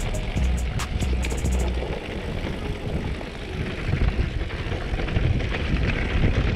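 A mountain bike rolling fast down a rocky gravel trail: steady, rough tyre and wind noise that gets louder in the second half. Over the first couple of seconds, background music with a quick hi-hat beat and deep bass plays on top.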